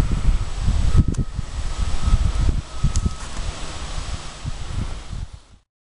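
Wind buffeting the camera microphone: an irregular, gusty low rumble that eases about halfway through and cuts off abruptly near the end.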